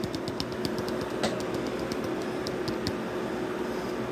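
Light, quick fingertip taps on a container of grated cheese to shake it out over the dish: a fast run of clicks at first, one sharper tap just over a second in, then a few sparse taps about two and a half to three seconds in. A steady low hum runs underneath.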